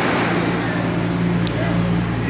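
Nippon Sharyo light-rail train running through an underground station as it pulls out, a steady loud rumble with a low electric hum under it.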